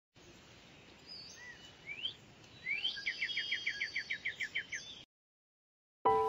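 A bird calling over a faint steady hiss: a few short rising whistles, then a fast run of about a dozen falling notes, some six a second. The sound cuts off suddenly about five seconds in.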